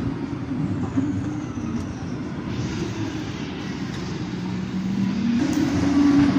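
Formula 1 car engine running at high revs out of sight, its steady note falling away in the middle. Near the end it grows louder and rises in pitch as the car approaches.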